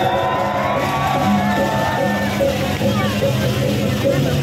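Loud music with steady, repeating low tones, under a crowd of voices shouting and calling out.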